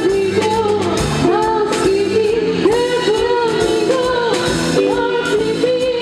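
A jazz big band playing with a singer: a sung melody line over the band's brass and rhythm section.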